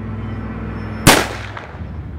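A single handgun shot about a second in, sharp and loud, with a short ringing tail.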